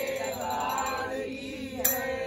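Several men chanting a Hindu devotional bhajan together, their voices overlapping and sliding in pitch. A short, sharp click sounds just before the end.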